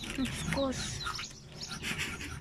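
Young poultry peeping: several short, falling cheeps spread through the moment.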